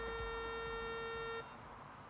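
A single steady pitched tone, held for about a second and a half and then cut off, leaving a faint hiss.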